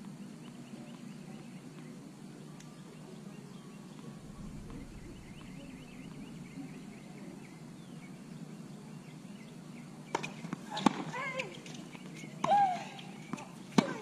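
Steady outdoor background with birds chirping faintly. About ten seconds in, a few sharp knocks and short calls.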